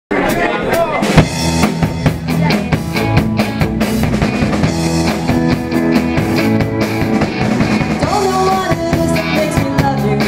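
Live pop-rock band playing an upbeat song on drum kit, bass, guitars and keyboards. The drums lead with steady hits, the hardest about a second in.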